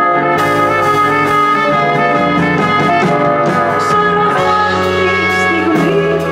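A live band plays an instrumental break between sung lines: a trumpet carries the melody over electric guitar, keyboard and held low bass notes.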